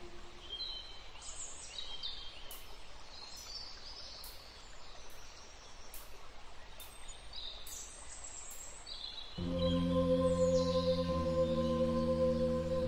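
Birds chirping over the steady hiss of a nature recording. About nine seconds in, ambient music of sustained, layered droning tones comes back in and the sound grows louder.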